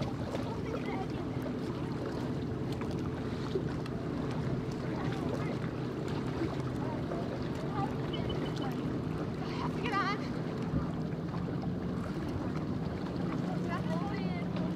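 Motorboat engine idling steadily, with faint voices over it.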